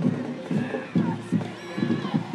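Parade drums beating a steady marching cadence, a low hit every third to half second, with voices around.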